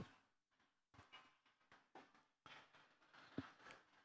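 Near silence, with a few faint, brief knocks, the clearest one shortly before the end.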